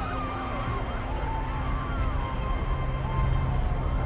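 Several emergency sirens wailing at once, their overlapping pitches sliding up and down, over a steady low rumble.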